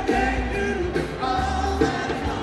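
Live rock band playing a Chicago blues number, a male voice singing over electric guitars, bass and drums.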